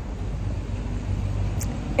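Steady low outdoor rumble with a faint hum, and no other distinct event.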